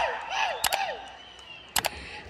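A short voice trailing off in the first second, then sharp clicks and knocks through the PA as a microphone is handled and lifted off its stand, the loudest pair about a second and three-quarters in.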